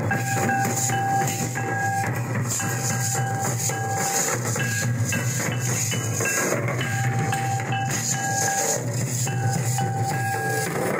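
Folk barrel drums played in a fast, steady dance rhythm, with a dense rattling, jingling layer like shakers or bells over them. Short held high notes repeat in a pattern above the beat.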